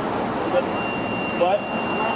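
Steady background noise of an airport terminal hall, the even hum of ventilation and the room, with a thin, steady high-pitched tone that starts a little under a second in.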